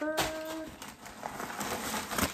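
Tissue paper rustling and crinkling as it is pulled out of a handbag.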